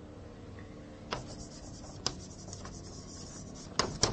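Writing on a board: faint rubbing strokes, with sharp taps about a second in, about two seconds in, and near the end.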